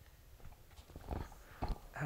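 A few soft knocks and rustles, the loudest about a second in and just before the end.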